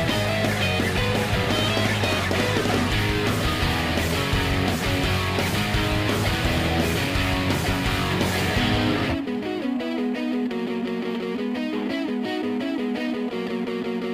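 Rock music with electric guitar. About nine seconds in, the bass and drums drop out and the guitar carries on with a thinner sound.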